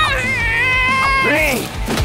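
A cartoon character's high-pitched, wavering wail held for over a second, then breaking into short rising-and-falling cries, over background music.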